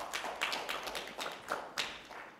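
A few people clapping by hand: light, scattered applause of irregular claps.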